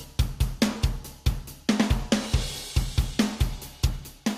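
A recorded rock drum kit playing a steady beat of kick, snare and hi-hat and cymbals, run through a multiband compressor and gate. Upward compression on the high band brings up the room sound, making it very lively.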